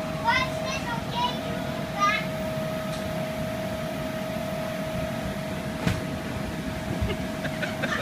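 Steady hum of an inflatable bounce house's air blower, a constant whine over a rushing-air noise.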